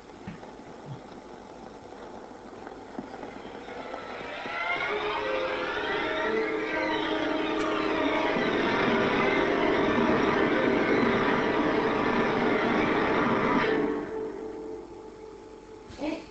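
Ominous film-score swell from a documentary soundtrack played through hall speakers: a low held drone with many pitches sliding up and down above it. It builds about four seconds in, stays loud, and fades near the end.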